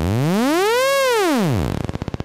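Synthesized transition sound effect: an electronic tone that sweeps up in pitch and then back down over about a second and a half, breaking into a rapid pulsing stutter near the end.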